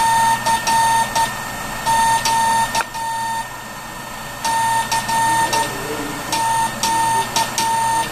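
Mechanical modulated-CW simulator sending Morse code through its speaker: a buzzy, steady-pitched tone, made by a motor-spun wheel and copper brush chopping the battery current, keyed on and off by a telegraph key in dots and dashes, with a short pause about halfway through. This is the tone that early-1920s hams imposed on their CW to imitate spark transmitters for receivers without a BFO. A steady motor hum runs underneath, and the key clicks as it closes.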